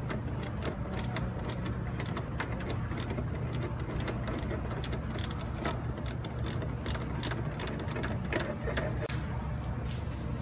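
Hand ratchet clicking in many quick strokes as a small 5.5 mm bolt on the rear mode door actuator is backed out, over a steady low hum.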